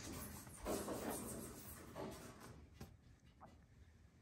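Faint scratching and scrabbling of a squirrel trapped in a chimney, a few soft rustles with light ticks, growing fainter toward the end.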